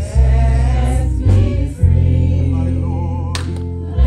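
Live gospel music: an electric bass plays a walking line under electric guitar, with voices singing along.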